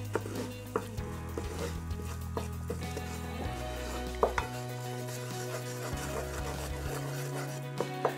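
Wooden spoon stirring flour into hot melted butter in a cast-iron pot to start a roux: scattered light taps and scrapes of the spoon against the pan over a faint sizzle. A low hum runs underneath, dropping out and coming back a few times.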